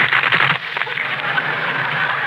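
Studio audience laughing, densest in the first half second and then carrying on steadily.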